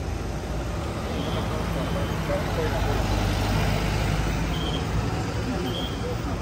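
Street traffic: the engines of passing cars, taxis and motorbikes running, a little louder in the middle, with voices in the background.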